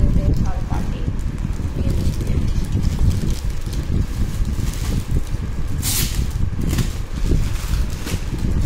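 Plastic garment packaging crinkling and clothes rustling as they are handled, over steady low handling rumble on the microphone. The crinkle is loudest briefly about six seconds in.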